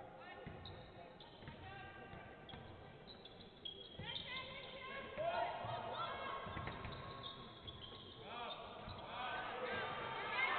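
A basketball bouncing on the court while sneakers squeak in short, high chirps as players cut and stop. The squeaks get louder and more frequent from about four seconds in.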